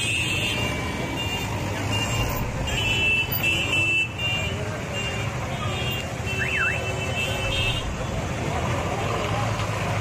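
Busy street with traffic and crowd chatter. High-pitched vehicle horns beep in short clusters near the start, in the middle and again later on.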